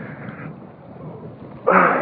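Wind rushing over the phone's microphone with water splashing around the paddle craft, a steady low rush that swells into a louder burst near the end.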